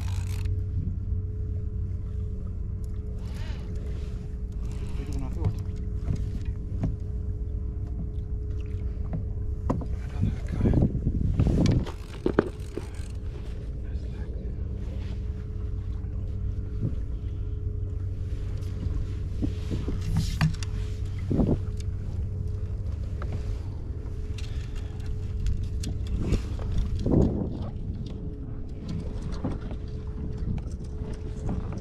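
A spinning reel being wound in under load against a hooked kingfish, over a steady low hum. A few louder knocks come about a third of the way in and again later.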